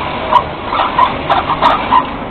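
Industrial sewing machine running steadily as fabric is fed through it, with a run of about six short, sharp sounds over the running noise in the second half.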